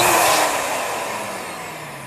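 Small electric balloon pump running, blowing air into a balloon on its nozzle. It starts abruptly and gets gradually quieter and lower in pitch.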